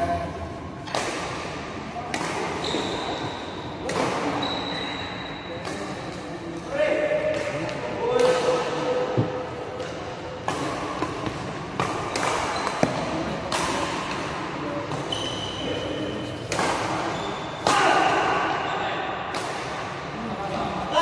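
Badminton rackets striking a shuttlecock in a doubles rally: a string of sharp hits roughly every one to two seconds, each ringing out in the echo of a large hall.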